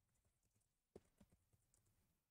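Near silence, with a few faint keyboard keystrokes about a second in as a search term is typed.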